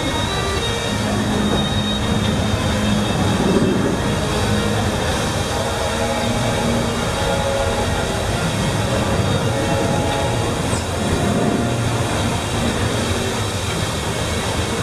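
Steam-driven sternwheel riverboat (the Liberty Belle) moving off, its paddlewheel churning and splashing the water over a steady mechanical rumble.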